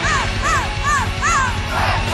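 Live symphonic metal band playing, with a high female voice singing four short rising-and-falling notes about half a second apart, then crowd shouts in time with the beat near the end.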